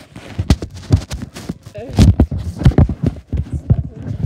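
Irregular knocks and clatter from an iPad being handled and bumped about inside a plastic toy car, mixed with short bits of a person's voice.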